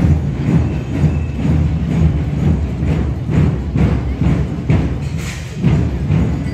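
Marching band playing with drums beating a steady march rhythm.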